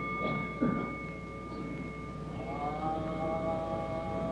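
Chanting at a Pure Land Buddhist service pauses between phrases, with a steady ringing tone held over. About two and a half seconds in, the congregation's voices take up a new long held note.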